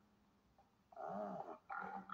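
Film soundtrack heard through a laptop speaker: near silence for about the first second, then an animal-like vocal sound with a wavering pitch that runs on to the end.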